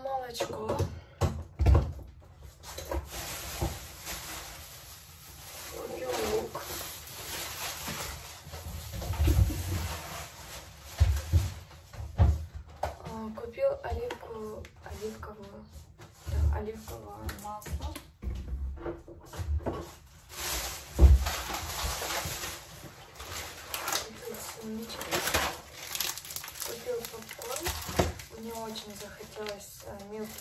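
Groceries being handled: repeated dull thuds as cartons and bottles are picked up and set down, under indistinct talk.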